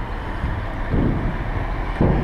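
Wind buffeting the camera's microphone: a steady low rumble that swells about a second in.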